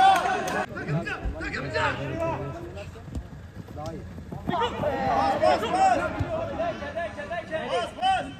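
Several men shouting and calling to one another during a five-a-side football game, overlapping and unclear, with a short lull about three seconds in before the calls pick up again.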